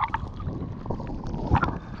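Sea water sloshing and gurgling around a GoPro at the waterline, with small bubbly pops and a sharper splash about one and a half seconds in.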